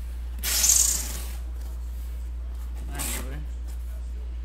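Cardboard shipping case being opened: a loud hissing scrape of cardboard about half a second in, a shorter one about three seconds in, over a steady low hum.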